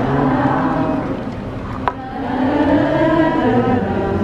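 A crowd of voices singing together in long, held notes, with a sharp click about two seconds in.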